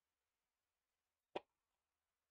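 A single tennis ball bounce on a hard court, one short sharp pop, as the server bounces the ball before her toss.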